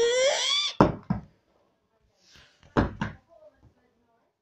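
Plastic water bottle tossed in bottle flips, knocking down onto a wooden floor: two quick thuds about a second in and two more near three seconds. A drawn-out, rising shout trails off in the first second.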